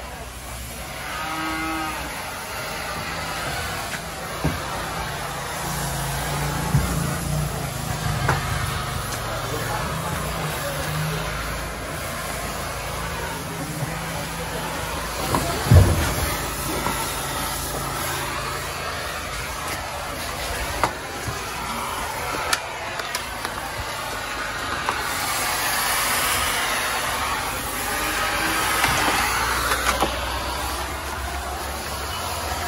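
Homemade thermal fogging machine running with a steady, noisy rush while it pumps out insecticide fog. A cow lows for several seconds a few seconds in. A sharp knock about halfway through is the loudest sound.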